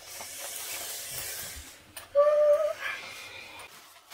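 Rustling of a nylon bag and its plastic packaging being handled, then about two seconds in a short hummed note from a woman's voice, rising slightly at its end, followed by more soft rustling.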